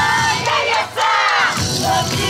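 Yosakoi dancers shouting a call together, many voices in one long rising-and-falling yell while the backing music drops out for about a second; the music comes back near the end.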